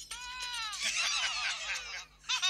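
A high-pitched cry that falls slowly in pitch, followed by a quick run of shorter falling cries.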